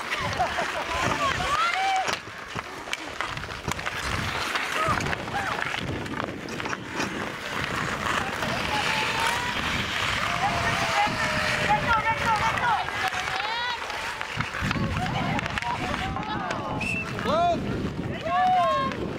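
Players and onlookers shouting and calling out over an outdoor pond hockey game, with skate blades scraping the ice and sharp clacks of sticks.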